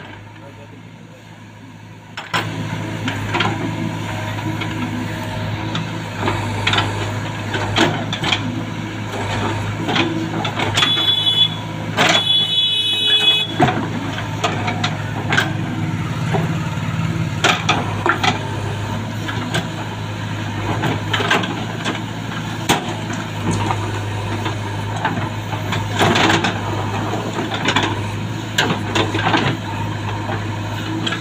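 JCB 3DX backhoe loader's diesel engine running steadily under load while the backhoe bucket digs and scrapes soil, with frequent knocks and clanks from the bucket and arm. The machine noise starts about two seconds in, and two short high beeps sound partway through.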